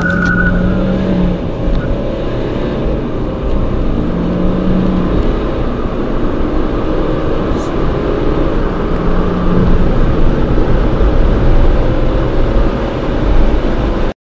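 Car engine accelerating hard, heard from inside the cabin, with continuous engine and road noise that slowly rises in pitch.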